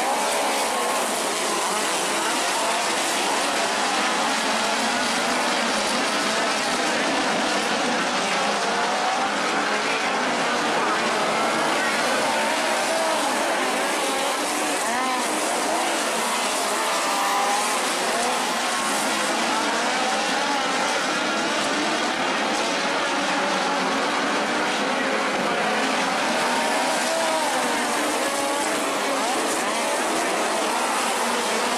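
A pack of dirt-track midget race cars running at speed. Their engines make a steady, overlapping drone whose pitch wavers up and down as the cars go down the straights and through the turns.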